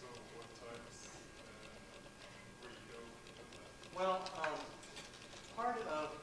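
Speech only: a voice talking, faint at first and louder in two stretches, about four seconds in and again near the end.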